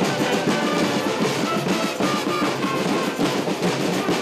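School marching band playing: snare and bass drums beating under flutes, clarinets and saxophones, loud and full.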